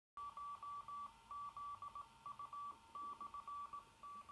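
Morse code: a single beep tone of one pitch, keyed on and off in a rhythm of short and long tones (dots and dashes).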